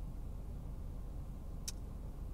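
Steady low rumble of a car, heard from inside its cabin, with one short faint high tick near the end.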